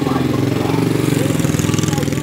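Small street motorcycle's engine running at low speed as it rides close past, a steady low drone with a fast, even firing pulse.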